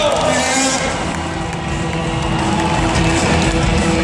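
Loud rock music from a live band, with a steady beat, filling a large arena.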